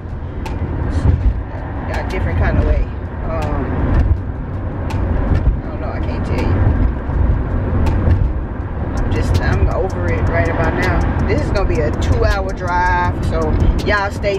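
Car cabin road noise from driving, a steady low rumble, with scattered light clicks. A person's voice comes in during the last few seconds.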